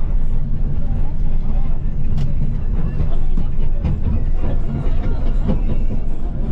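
A bus's engine and road noise heard from inside the moving cabin: a steady low rumble with occasional rattles.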